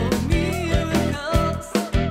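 A pop-rock band playing with a steady beat: a woman singing over drum kit, bass guitar and keyboard.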